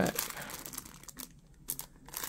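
Clear plastic overwrap of a 1984 Fleer football rack pack crinkling as the card packs inside are handled, busiest in the first second, then dying down before a short crackle at the end.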